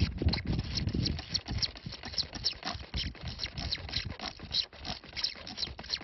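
A hand digging tool scraping and picking at damp clay soil around an embedded arrowhead: an irregular run of short scrapes and clicks.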